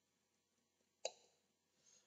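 Near silence, with one brief click about a second in.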